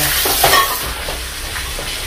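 Pork skin pieces frying in hot oil in a wok, a steady sizzle.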